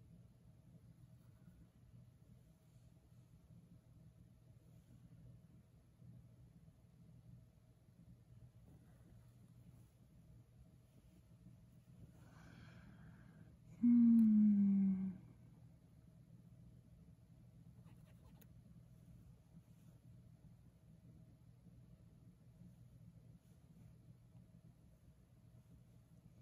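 Quiet room tone with a faint steady electrical hum. About fourteen seconds in, after a breath, a woman hums a short closed-mouth 'mmm', about a second long and falling in pitch.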